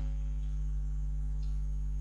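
Steady low electrical hum with a few faint, steady higher tones above it, unchanging throughout.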